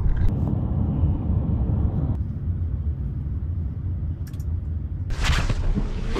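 Steady low road and engine rumble heard inside a moving car's cabin, easing after about two seconds as the car slows. A few light clicks, and a short burst of noise about five seconds in.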